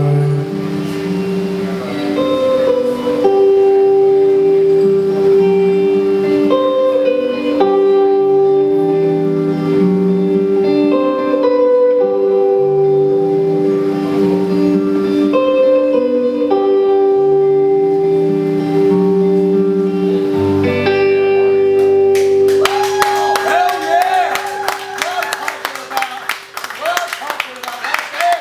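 Electric guitar playing a slow, repeating figure of ringing notes over a held high note, closing on a low note. Near the end, audience clapping breaks in as the song finishes.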